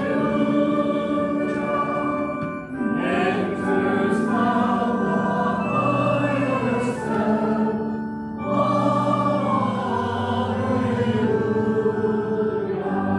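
Church congregation singing a hymn with organ accompaniment, with brief breaks between phrases about three and eight seconds in.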